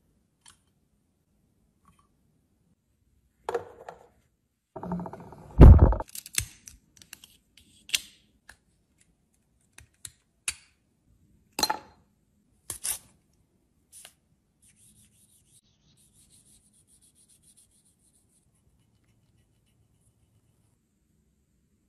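Close handling of lipstick tubes and cases: scattered small clicks, taps and scrapes of plastic and metal, with one louder knock about six seconds in. A faint scratchy rubbing follows later on.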